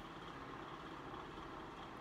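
Quiet room tone: a faint, steady background hum with no distinct event.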